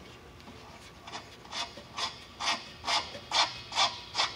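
Gloved hand turning the brass hose coupling on a propane cylinder's valve: a run of about eight rasping rubs, roughly two a second, growing louder from about a second in.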